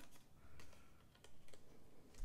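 Faint snips and clicks of small scissors cutting a notch into thick white cardstock.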